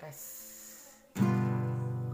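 A G7 chord strummed once on a nylon-string classical guitar about a second in, left to ring and slowly fade.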